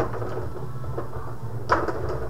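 Rod hockey game in play: a few sharp clacks from the rods, plastic players and puck, the loudest near the end, over a steady low hum.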